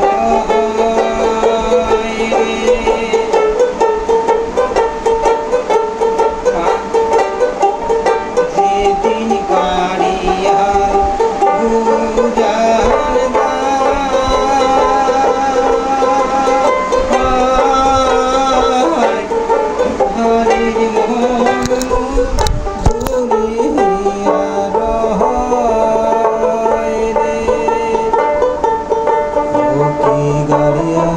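Dotara, a skin-bellied long-necked lute, plucked continuously in a quick folk melody. There is a brief low thump about three-quarters of the way through.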